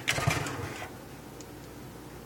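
A few light clicks and clatters of a stainless steel electric kettle being handled and lifted out of a stainless steel sink, in the first second, then quiet room sound.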